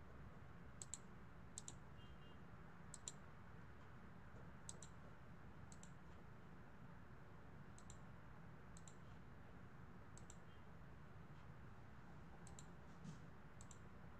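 Faint computer mouse clicks, about a dozen at irregular intervals, some in quick pairs, over a low steady room hum.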